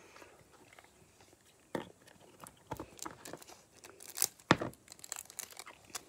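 Homemade purple slime being poked and squished by hand, giving irregular small pops, clicks and crackles as air bubbles burst, with one sharper snap about four and a half seconds in.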